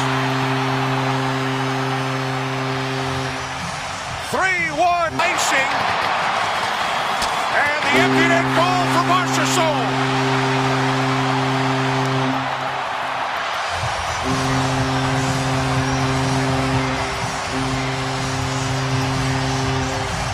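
Hockey arena goal horn sounding in three long, steady blasts over a cheering crowd after goals, with loud shouting in between.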